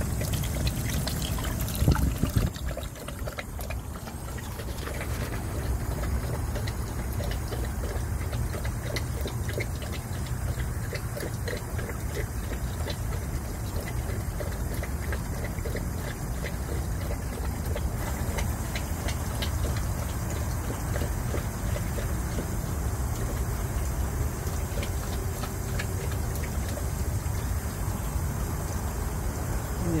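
Water running from a garden hose while a dog laps at it, a steady trickle and splash with many quick, regular laps, and a brief louder bump about two seconds in.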